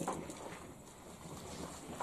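Faint, steady background noise of the range, with a brief click at the very start.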